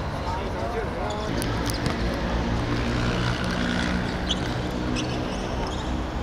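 Outdoor sports-ground ambience: a voice calling out in the first second, scattered sharp knocks of a ball or feet on the hard court, and a steady low hum underneath.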